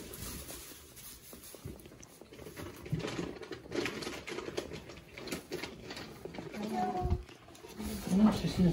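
Goats eating loose mineral from a plastic feeder: quick, irregular clicks and crunches as they lick and chew the granules.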